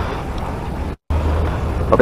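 Steady low outdoor background rumble with no distinct event. It cuts to silence for an instant about halfway through, then carries on.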